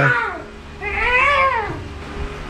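A Pomeranian puppy gives one drawn-out whine about a second in, rising and then falling in pitch.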